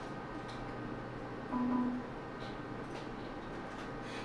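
Steady hum of laboratory electronics, made of many faint constant tones, with a brief low tone sounding for about half a second roughly a second and a half in.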